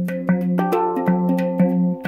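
Handpan played with the hands: a quick run of struck steel notes, about five strikes a second, each ringing on over a recurring low note.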